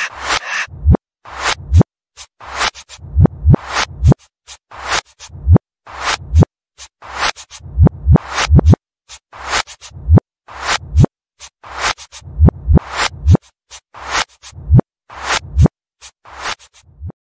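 A song played in reverse: drum hits run backwards, each swelling up and cutting off abruptly, in a choppy, stop-start beat with no singing. The reversed hits sound like record scratching.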